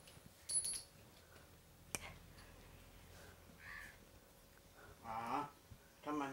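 Mostly quiet room with a few small clicks, then near the end a brief drawn-out sound from a person's voice.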